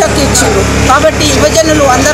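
A woman's voice speaking continuously, over a steady low rumble.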